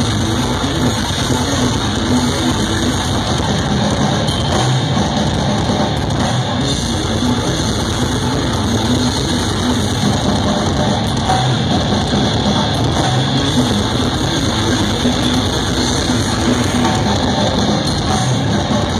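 Technical death metal band playing live through a stage PA: distorted electric guitars, bass and drum kit, loud and unbroken.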